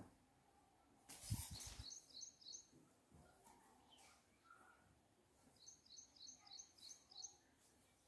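Faint bird chirping in quick runs of high chirps, a short run of about four about two seconds in and a longer run of about seven near the end. About a second in, the loudest sound: a brief rustle with soft thumps of cotton cloth being flapped and laid down on a concrete floor.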